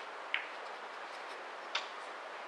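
Two short, sharp clicks about a second and a half apart, over a steady background hiss.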